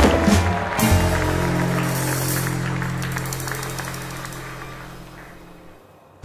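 Closing music ending on a long held chord that slowly fades out.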